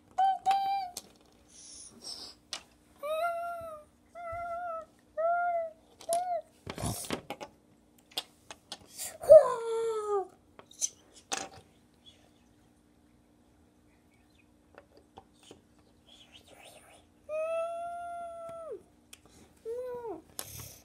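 A child's voice making wordless, high-pitched play sound effects: a run of short sung calls, a loud falling squeal about nine seconds in, and a long held call near the end, with a few short handling knocks between them.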